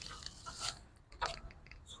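Quiet handling noise: a soft rustle about two-thirds of a second in and a small click a little after a second.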